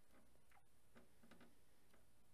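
Near silence: faint room hiss with a handful of soft, brief ticks.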